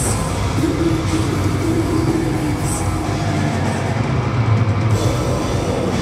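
Death metal band playing live: heavily distorted guitars and bass over drums, loud and continuous. A held note stands out through the first half.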